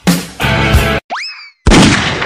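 Intro music with a heavy beat that cuts off about a second in, followed by a quick rising-pitch sound effect and then a loud crash that rings out near the end.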